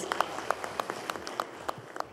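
Audience applause with individual hand claps standing out, thinning and growing quieter toward the end.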